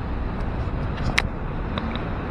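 Steady outdoor city background noise, a low rumble and hiss like distant road traffic, with one short sharp click a little over a second in.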